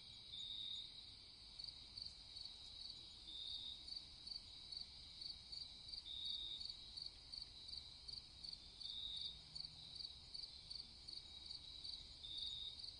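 Crickets chirping faintly in a steady, even rhythm of about two to three chirps a second. A longer, slightly lower trill joins in about every three seconds.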